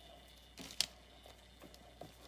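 Quiet room tone with one short, sharp click a little under a second in and a few fainter soft handling sounds around it.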